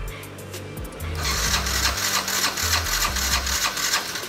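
Yamaha Cuxi 100 scooter engine turning over with a rapid, dense mechanical whirr for about two and a half seconds, starting about a second in, while the throttle is twisted. Background music plays under it.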